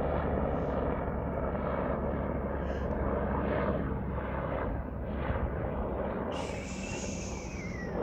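Helicopter flying by: steady rotor and engine rumble, with a high turbine whine that comes in about six seconds in and falls in pitch.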